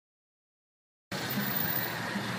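Motor vehicle engine running on a street, starting abruptly about a second in after dead silence.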